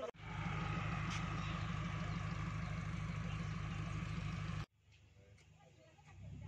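A vehicle engine running steadily with a low, even throb. It cuts off suddenly about four and a half seconds in, leaving only a faint background.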